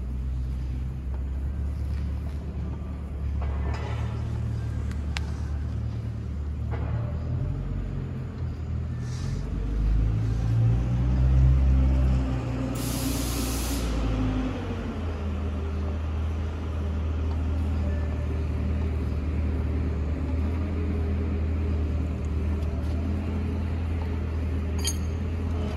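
Forklift engine running at idle, a steady low hum that swells for a couple of seconds about halfway through, followed by a short hiss lasting about a second.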